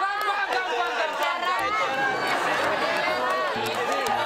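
Several people talking and laughing at once, their voices overlapping.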